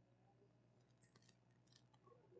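Near silence: room tone, with a few faint clicks about a second in and again near the end.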